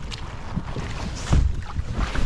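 Inflatable paddleboard being handled and set down on shallow river water, with low rumbling wind and handling noise on the board-mounted camera and a louder rush of water a little over a second in.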